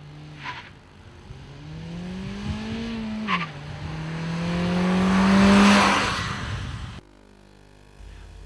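Ford EcoSport accelerating toward and past the listener: the engine note climbs, drops at a gear change a little over three seconds in, then climbs again, loudest with rising tyre noise as the car goes by, before fading. The sound cuts off about a second before the end.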